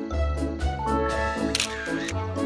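Background music with a regular beat, and a camera shutter click sound effect about one and a half seconds in.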